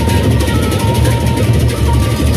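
A Sasak gendang beleq ensemble playing: many pairs of hand cymbals clashing in a rapid, dense pattern over the low beat of large barrel drums.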